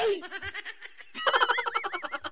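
A brief high-pitched giggle, several quick rising-and-falling notes, starting a little past halfway.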